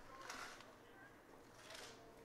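Near silence: faint background hiss, with two soft swells of noise, one shortly after the start and one near the end.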